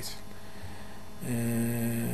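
A man's voice holding one long hesitation vowel at a flat, unchanging pitch, starting a little over a second in, over a steady electrical mains hum.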